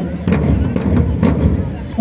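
Loud low rumbling noise with two sharp knocks about a second apart, while the march music drops out.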